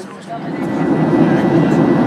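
Jet airliner cabin noise in flight, heard from a window seat near the engine: a loud, steady low roar of engines and airflow that comes in about half a second in, with a thin steady high tone above it.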